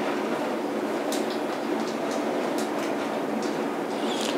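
Steady background noise, an even hiss with a few faint clicks, holding at a constant level with no words over it.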